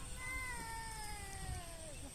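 A cat meowing: one long, drawn-out meow that falls steadily in pitch over about a second and a half.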